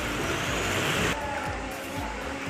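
Steady rushing noise of rain and running floodwater, cutting off abruptly about a second in. After the cut come quieter background music and voices.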